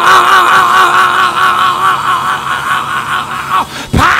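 A male preacher holding one long, high chanted note with a wavering vibrato for nearly four seconds, breaking off just before the end. It is the sung, drawn-out close of a phrase in the whooping style of a Black Baptist sermon climax.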